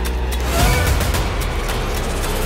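Dramatic television background score: a loud, low rumbling drone with a swell about half a second in.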